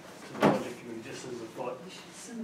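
A single sharp knock about half a second in, with low talking around it.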